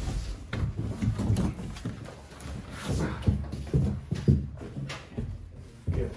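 A large cardboard speaker carton being lifted and slid off its contents: irregular scraping and rustling of cardboard with several dull knocks.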